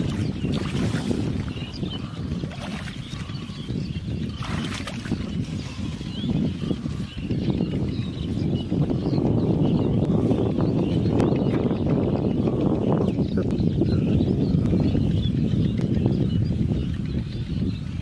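Wind rumbling on the microphone throughout, with occasional brief splashes and swishes of water as someone wades through shallow water among the plants.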